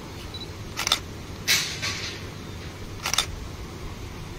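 Camera shutter clicking as a group photo is taken: two quick double clicks about two seconds apart, with a brief burst of noise between them.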